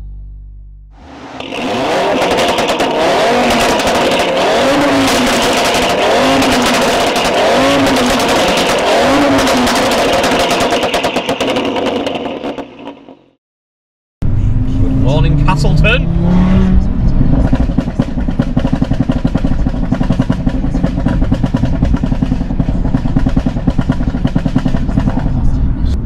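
Audi RS3's five-cylinder engine and sports exhaust. For about twelve seconds the revs rise and fall repeatedly over dense crackling from the pop-and-bang map. It cuts off suddenly, and after a second of silence the engine pulls up in pitch and then runs steadily under way.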